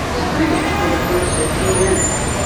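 Airport curbside traffic noise: buses and cars running in the lanes, a steady low rumble, with faint voices in it.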